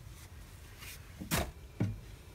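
Two brief, soft handling sounds about half a second apart, in the second half: hands working a crochet hook into a crocheted mitten against a tabletop.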